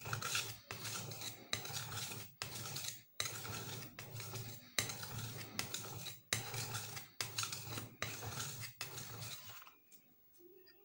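A steel cleaver blade being sharpened on a fine wet whetstone, scraping across the stone in about ten strokes of roughly a second each with short breaks between them.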